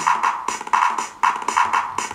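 Sampled electronic drum pattern from the Tidal live-coding language: clap, snare, bass drum, toms and hi-hat sounds looping quickly at a tempo of two cycles per second, about five hits a second.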